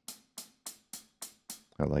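Sampled hi-hat from Logic Pro X's Drum Kit Designer played six times at an even pace, about three strikes a second, each dying away quickly. It has been tuned lower and has its Dampen control turned up, shortening its ring.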